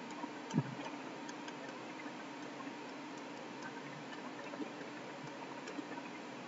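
Faint, irregular small ticks and taps of a stylus on a tablet while handwriting is written, over a steady low hiss, with one soft low thump about half a second in.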